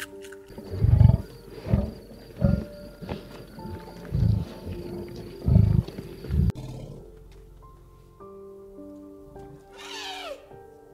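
A large animal's deep calls, six in a row about a second apart, over soft background music; they stop abruptly about six and a half seconds in.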